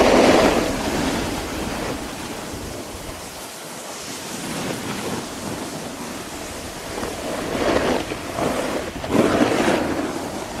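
Skis sliding and carving on groomed snow, the edges scraping louder in swells with each turn (one at the start and two near the end), with wind rushing over the camera microphone.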